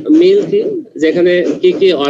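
A person's voice speaking, with short pauses between phrases.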